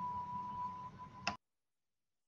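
Faint steady high tone over low background noise, ended by a single click about a second in, after which the audio cuts to dead digital silence: the lecture recording being paused for a break.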